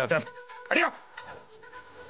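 Film dialogue: a short spoken word at the start and a brief voiced sound just under a second in, over a faint, steady held note of background music.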